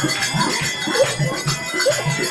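Live Gajon folk music: a steady drum beat, about three to four beats a second, with jingling percussion over it.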